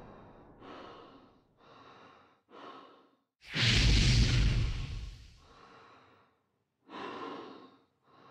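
Sparse electronic runway soundtrack made of breath-like noise bursts: three short exhales in the first three seconds, then a loud hit with deep bass that fades over about two seconds, and one more breathy burst near the end.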